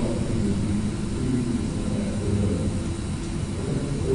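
Steady low rumble of lecture-hall room noise, with faint wavering murmur and no clear speech.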